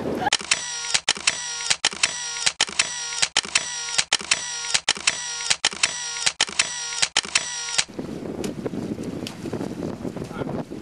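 Camera shutter sound effect clicking over and over, about two to three clicks a second with a steady whine beneath, cutting off suddenly after about eight seconds. Wind on the microphone follows.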